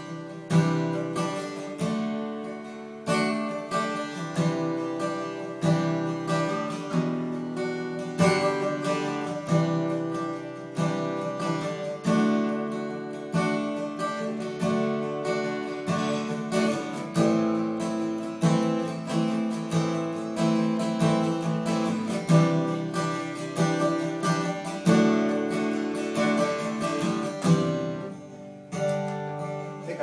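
Acoustic guitar strumming a chord progression in the key of G in a steady rhythm, the chords changing every second or two. The ending is fumbled, with a brief falter near the end.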